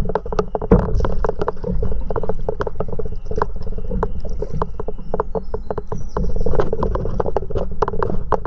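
Water lapping and splashing against a moving paddleboard, many quick irregular clicky slaps over a steady low rumble.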